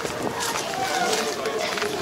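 Voices of people talking in the background, with the crunch of footsteps on gravel as someone walks.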